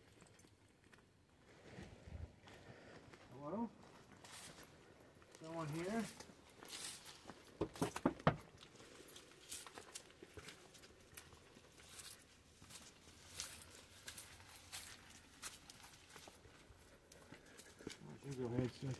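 Faint footsteps on a dirt and gravel path: irregular crunches and taps from people walking, busiest about halfway through. A couple of brief low voice sounds come a few seconds in.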